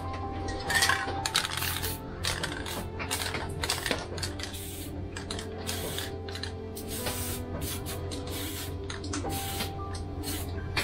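Short bursts of an aerosol spray paint can, sprayed again and again against a paper mask, over background music.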